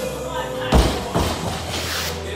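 A loaded barbell with bumper plates dropped from the top of a deadlift lands on the gym floor with a heavy thud about three-quarters of a second in, then knocks once more, more lightly, a moment later. Music plays throughout.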